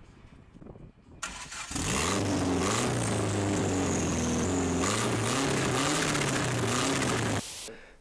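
The SU-carburetted engine of a red Ford Fiesta starts up a little under two seconds in and runs, its revs rising and falling a few times. It cuts off shortly before the end.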